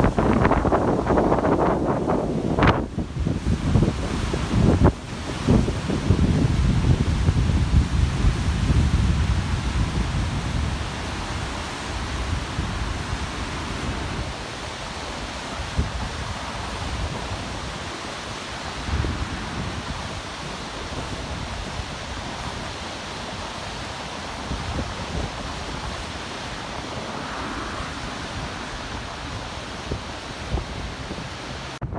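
Wind buffeting the microphone in gusts, heaviest for the first ten seconds, over the steady rushing of the flood-swollen Chikuma River; two sharp knocks in the first five seconds.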